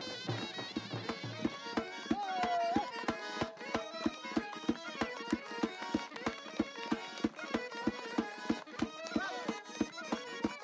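Fast traditional Caucasian folk dance music: a drum beats about four strokes a second under a melody instrument playing held, sliding notes.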